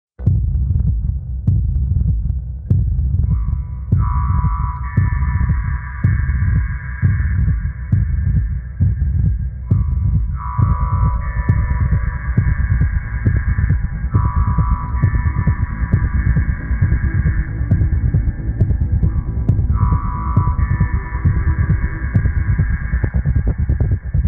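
Instrumental intro on synthesizer: a steady pulsing low throb, with sustained chords coming in a few seconds in and held in long phrases of several seconds each.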